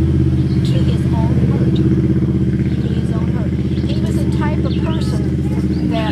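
An engine running at a steady speed nearby, a low, even drone. Faint voices are heard in the background.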